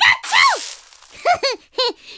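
A high-pitched character voice making wordless sounds: a rising-and-falling vocal glide at the start, then three short quick syllables about a second and a half in. A brief burst of hiss sounds along with the first glide.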